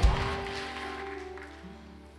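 Soft background music: sustained chords held under the sermon, slowly fading away.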